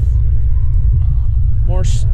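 A steady, loud low rumble with no clear rhythm, running under a single spoken word near the end.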